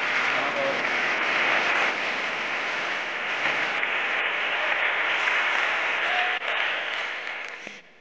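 A large audience applauding steadily, a dense clapping that cuts off sharply just before the end.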